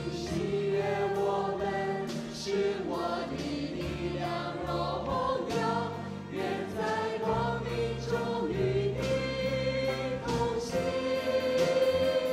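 A praise band and congregation singing a worship song together, many voices over a band of piano, guitar and drums, with regular cymbal strokes.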